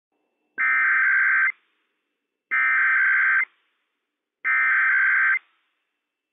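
NOAA Weather Radio Emergency Alert System SAME header: three bursts of warbling digital data tones, each just under a second long and about a second apart. This coded header opens a Required Weekly Test broadcast.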